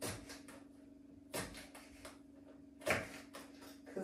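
Knife cutting red pepper on a wooden cutting board: three sharper knocks of the blade on the board about a second and a half apart, with lighter taps between them.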